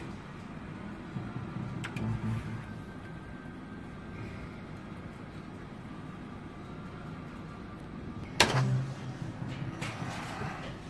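Merkur 'Rockin' Fruits' video slot machine playing with faint electronic tones over a steady low hum. There is a sharp click about two seconds in and a louder knock with a low thud about eight and a half seconds in.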